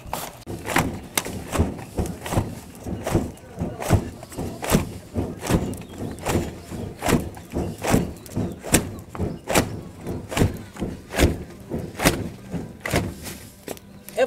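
A folded sack flapped hard and fast over a struggling wood fire to fan it, giving a steady run of whooshing flaps about two to three a second; the air is being driven in to get the damp wood burning.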